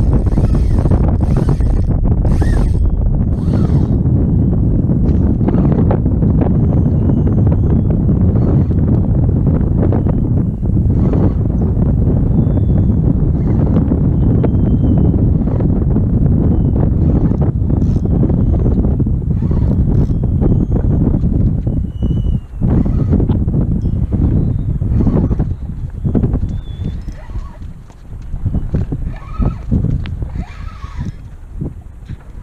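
Strong wind buffeting the microphone over open water, a loud steady rumble that eases near the end. A few faint, short high-pitched squeaks sound above it.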